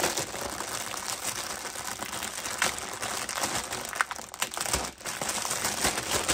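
Thin clear plastic bag crinkling as it is handled and pulled at to get a toy car out, with scattered sharper crackles.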